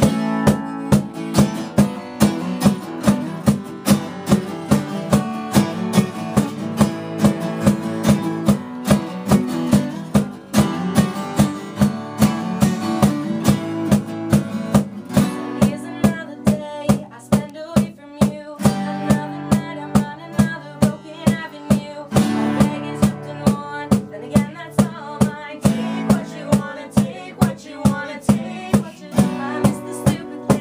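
Live acoustic band playing: two acoustic guitars strumming chords over a steady drum beat.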